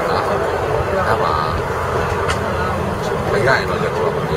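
A man talking in Burmese over a steady low rumble of street traffic.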